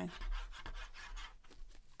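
The nozzle of a squeezed plastic wet-glue bottle scraping across a card panel, with the card being handled: a run of short, uneven scratchy rubbing sounds.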